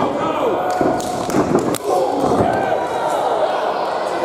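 Several sharp slams of wrestlers' bodies hitting the wrestling ring, coming between one and two seconds in, over spectators' voices shouting.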